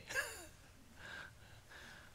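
A man's soft breathing picked up by a close microphone in a pause in his speech: a short breathy sound fading out just after the start, then faint breaths.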